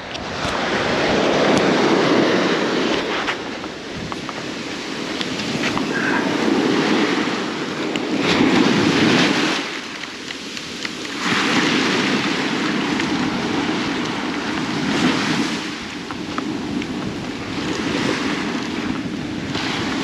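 Small surf waves washing in and draining back over the sand at the shoreline, swelling and fading every few seconds, with wind on the microphone.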